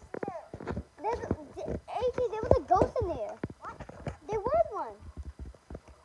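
A young girl's voice making wordless vocal sounds that rise and fall in pitch, mixed with sharp clicks and knocks.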